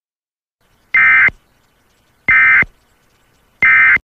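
Emergency Alert System end-of-message signal: three short, identical, buzzy bursts of digital data tones about 1.3 seconds apart, each lasting about a third of a second.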